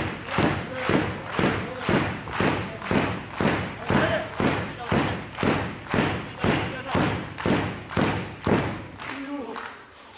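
Arena crowd clapping in unison at a steady beat, about two claps a second, stopping about nine seconds in.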